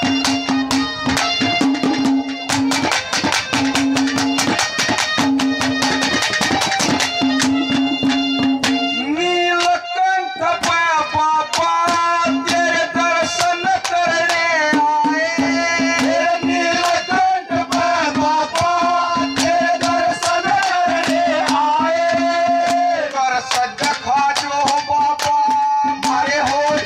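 Haryanvi ragni folk music: fast hand-drum strokes and harmonium play an instrumental passage, then about ten seconds in a man's voice comes in singing a long, winding melody into a microphone over the drums.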